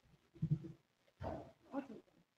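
Quiet, indistinct talking: a few short snatches of people's voices in a meeting room.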